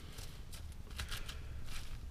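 Soft, scattered rustling and crackling of a gloved hand placing salad scraps of lettuce and cucumber onto damp compost and dry leaves in a worm bin.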